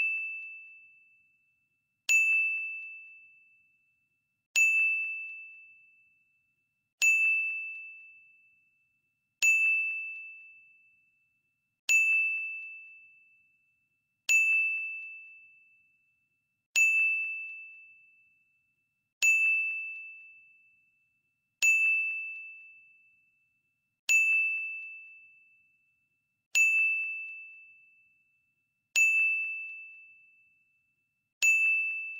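Quiz countdown timer sound effect: a single high chime struck about every two and a half seconds, each ringing out and fading within a second or two.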